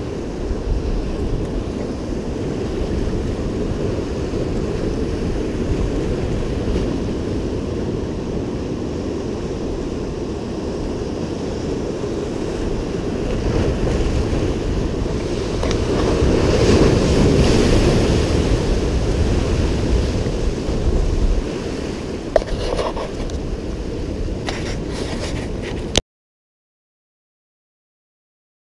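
Ocean surf washing over and around shoreline rocks, a steady wash of breaking water that swells into a bigger surge about halfway through, then cuts off suddenly near the end.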